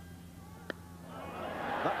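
A single sharp crack of a cricket bat meeting a fast delivery, about two-thirds of a second in, followed by crowd noise from the spectators swelling over the next second.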